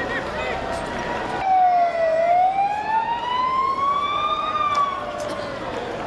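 Emergency vehicle siren sounding one slow wail, starting about one and a half seconds in. It is a single tone that dips briefly, then rises for about three seconds and falls away near the end. Crowd voices run beneath it.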